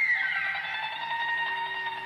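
Instrumental interlude music with several held notes, a sliding note falling away just after the start.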